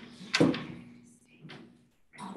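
Knocks and clunks of handling as someone works under a lectern, the loudest a sharp knock about half a second in, with a smaller one near the start and another near the end.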